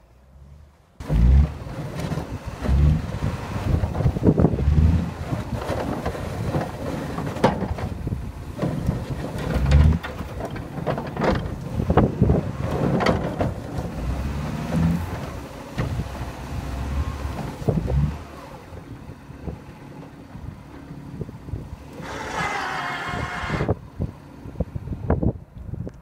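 A 2000 Dodge Neon's four-cylinder engine working hard as the car pushes heavy wet snow with a homebuilt plow blade, with a rough low rumble and many knocks and thumps. It starts about a second in and eases to a lower level in the last third.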